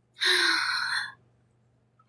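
A woman's single breathy sigh or gasp lasting about a second, with a brief touch of voice at its start.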